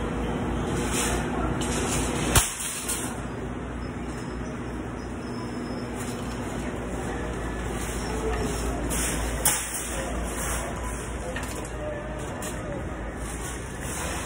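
Steady background noise of a large store with indistinct voices, broken by two sharp knocks, about two and a half seconds in and again near ten seconds, typical of a handheld phone being bumped.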